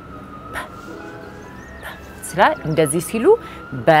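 A distant siren wailing slowly up and down in pitch. About halfway through, a woman's voice comes in over it, making short speech sounds.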